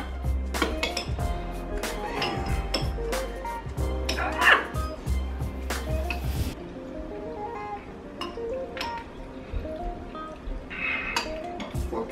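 Background music with metal forks clinking against ceramic bowls, many short clinks throughout; the music's bass drops out about two thirds of the way through.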